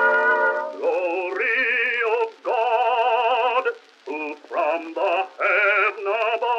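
Male bass-baritone voice singing a hymn with a wide vibrato, in phrases with short breaths between them. An instrumental phrase ends just under a second in, when the voice enters. The sound is thin, with no low bass, as on an early acoustic recording of 1917.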